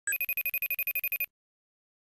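Electronic ringing trill as a logo sting: a bright tone pulsing rapidly, about twelve times a second, for just over a second, then it stops.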